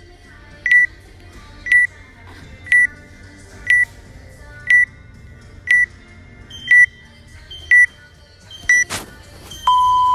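Workout countdown timer in the WOD Proof app beeping once a second: nine short high beeps, the last three with a second higher note, then a long lower tone near the end that signals the start of the workout. A sharp click comes just before the long tone.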